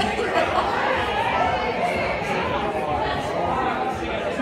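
Crowd chatter: several people talking at once, no one voice standing out, at a steady level.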